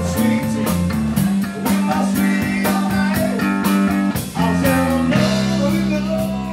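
Live blues band playing, with electric guitar and drums keeping a steady beat over sustained bass notes.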